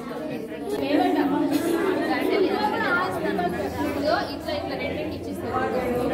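Several people talking at once: overlapping chatter of women's and other voices.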